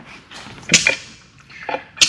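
A few light clicks and one sharper knock, a little under a second in, from small objects being handled on a boat deck.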